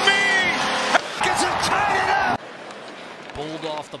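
Arena goal horn sounding over a cheering hockey crowd, the horn cutting off about a second in while the cheering carries on. About two and a half seconds in, the sound drops suddenly to quieter arena noise, and a commentator starts talking near the end.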